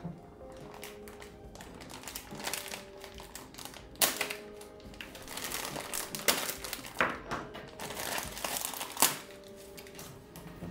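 Packaging being handled and crinkling, a noisy rustle with several sharp clicks, the loudest about four seconds in and again near the end, over soft background music.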